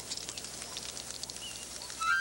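Early safety bicycle riding along a road outdoors: a run of light, irregular clicks and rattles over a steady hiss, with a faint bird chirp about a second and a half in.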